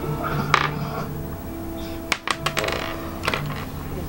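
Small hard plastic Lego pieces clicking as they are handled close to the microphone: one click about half a second in, a quick run of clicks around two seconds in, and another near the end. Steady background music plays underneath.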